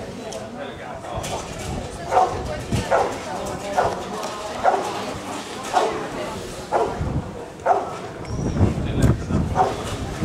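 Rottweiler barking at the helper in the hide during the hold-and-bark exercise of IPO protection work, about one bark a second from about two seconds in. A low rumble joins near the end.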